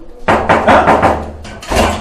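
Loud, rapid knocking on a door, a quick run of blows followed by one more heavy knock near the end.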